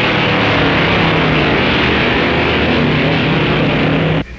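Two drag-racing cars running at full throttle down the strip, a loud steady engine roar.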